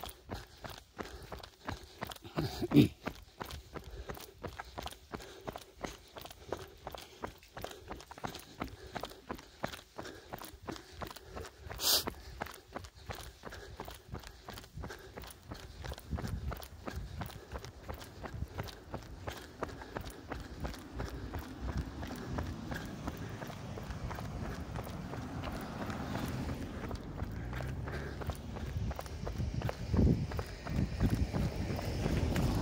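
A runner's footsteps on an asphalt road, an even beat of about three steps a second, picked up by a camera carried in the hand while running. A short loud thud comes about three seconds in and a sharp click about twelve seconds in, and a low rumble builds through the second half.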